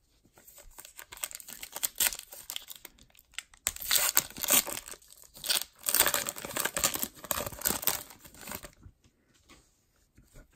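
A trading-card pack wrapper being torn open and crinkled by hand, in irregular bursts of crackling that stop about a second before the end.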